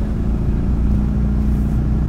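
1994 Toyota Land Cruiser Prado's 3.0-litre four-cylinder turbo-diesel (1KZ-TE) running at low speed as the truck turns tightly, heard inside the cabin as a steady low drone.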